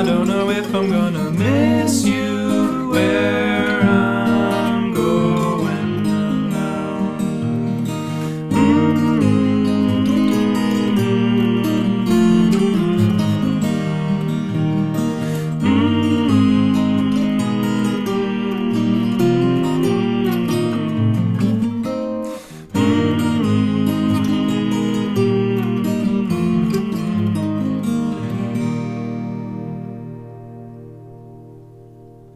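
Two fingerpicked steel-string acoustic guitar parts on an Eastman OM-size guitar in open E-flat tuning, playing an instrumental outro. The playing breaks off briefly about three-quarters of the way through, resumes, and rings out into a fade at the end.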